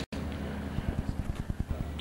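Wind rumbling steadily on an outdoor camcorder microphone, with faint background voices. The sound cuts out for an instant right at the start.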